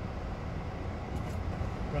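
Steady low rumble of idling vehicle engines heard from inside a stationary car.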